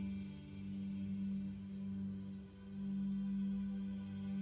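Ambient meditation music: one sustained low drone tone with faint higher overtones, swelling and easing off twice.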